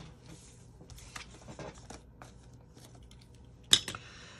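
Faint rustling and small clicks of paper and adhesive being handled as the release liner is peeled off a strip of adhesive, with one sharp click near the end.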